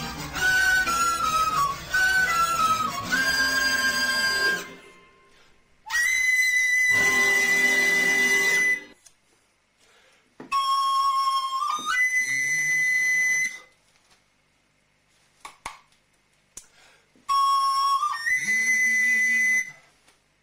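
Small recorder played jazz-style: a quick melody over an accompaniment for the first few seconds, then three long high held notes separated by pauses, each jumping up in pitch partway through.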